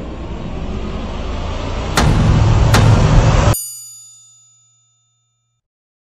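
Intro sound effect: a rumbling whoosh builds in loudness, jumps up with two sharp hits about two seconds in, then cuts off suddenly into a bell-like ding that rings out and fades.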